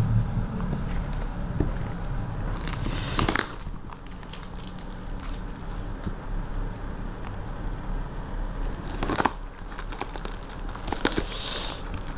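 Plastic-wrapped cardboard parcel being handled and opened by hand: the plastic wrap and packing tape crinkle in a few short bursts, and the cardboard tears near the end.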